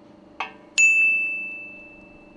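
A faint click, then about a second in a single clear metallic ding that rings on and fades away over about a second and a half, over a low steady hum.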